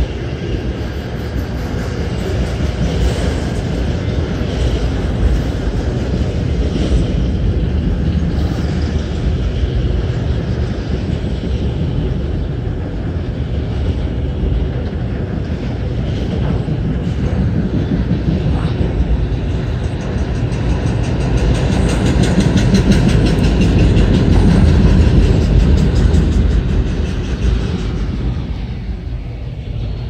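Autorack freight cars of a CSX train rolling past at close range: a steady, loud rumble of wheels on rail. It swells a little past the middle and drops off near the end.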